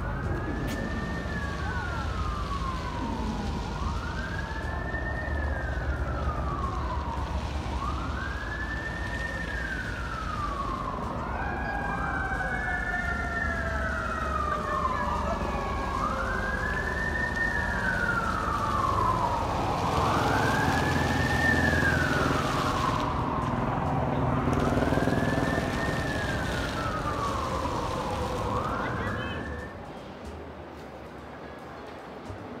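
Emergency vehicle siren wailing, its pitch rising and falling about every four seconds, with a second siren overlapping from about eleven seconds in. It grows louder in the second half and cuts off just before the end.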